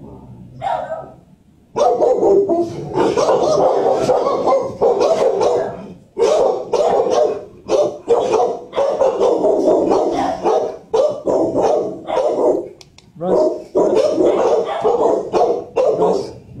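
Dogs in shelter kennels barking loudly and almost without pause. The barking starts about two seconds in and runs on with only short breaks.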